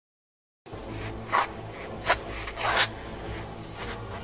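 A moment of dead silence, then outdoor background with a low hum, over which sneakers scuff a few times on a concrete path, with a sharp click between the scuffs.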